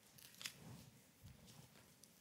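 Near silence: faint room tone with soft rustles and a light click about half a second in.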